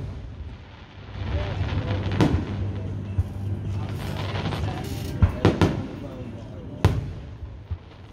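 Aerial firework shells bursting overhead, sharp booms over a rumbling background: one about two seconds in, then three more between about five and seven seconds in.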